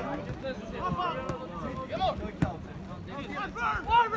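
Distant voices calling out across an open football pitch, with a sharp knock about two and a half seconds in.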